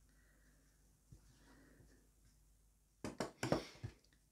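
Hand sewing of T-shirt fabric: mostly quiet, with a faint soft sound of thread being drawn through cloth. About three seconds in comes a cluster of short fabric rustles as the cloth is handled.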